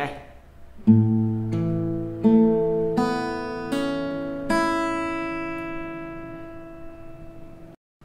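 Acoustic guitar fingerpicking a short phrase on an A major chord: about six notes picked one after another, rising from a low bass note through the strings, with a hammer-on on the second string. The last notes are left ringing and slowly die away until the sound cuts off suddenly just before the end.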